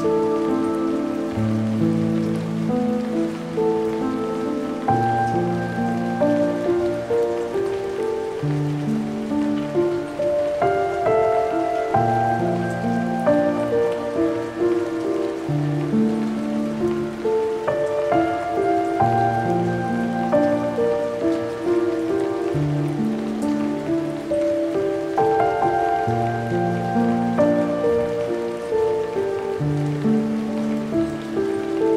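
Slow, melancholic solo piano music, chords and single notes each held a second or two, over a steady bed of rain sound.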